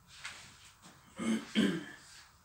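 A person clears their throat twice in quick succession, a little over a second in, after a faint rustle of clothing being turned over.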